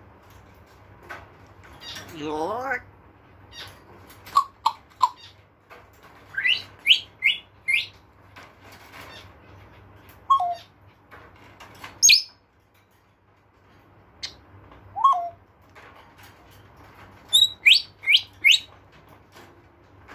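African grey parrot whistling and chirping in short scattered calls: a run of four quick rising whistles about six seconds in and again near the end, with a few short single notes and a sharp squeak between them.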